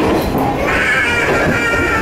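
A young child wailing in one long, high, drawn-out cry that starts a little under halfway through, over the steady rumble of a diesel railcar running.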